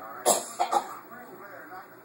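A person coughing once, a sudden harsh burst about a quarter second in, followed by a short spoken "uh".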